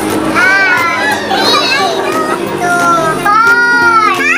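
Young women's high voices singing and shouting excitedly over a song playing in the background, with a long held high note near the end.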